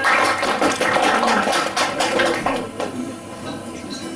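Acoustic guitar played with fast, percussive strumming, a dense run of struck chords that dies down over the last second or so.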